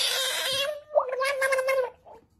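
A frog grabbed by hand crying out twice in a wailing scream: the first cry rough and hissy, the second starting with a short upward squeak, then held steady for nearly a second before cutting off. It is a defensive distress call.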